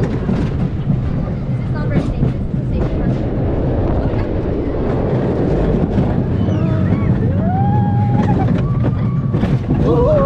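Roller coaster train rumbling steadily along its steel track, heard from on board. Riders shout and yell over it, with one long held yell a little past the middle and more shouts near the end.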